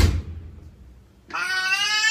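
A brief thump right at the start, then about halfway through a cat lets out a long, drawn-out meow that rises and falls in pitch.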